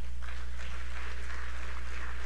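A congregation applauding, many people clapping steadily.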